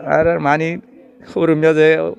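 A man crying aloud: two long, drawn-out cries about half a second apart.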